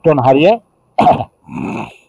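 Only speech: a man's lecturing voice in short phrases, with a quieter, breathier stretch near the end.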